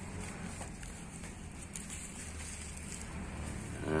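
Faint, soft scraping and crumbling of fingers picking moist soil away from the exposed roots of a Sancang (Premna microphylla) bonsai, with a few small ticks, over a steady low background hum.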